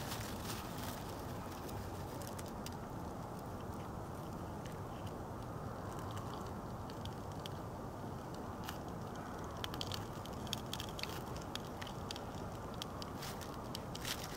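Small kindling fire of hardwood feather sticks and shavings crackling, with scattered sharp pops that come more often in the second half as the shavings catch. A steady low background noise runs underneath.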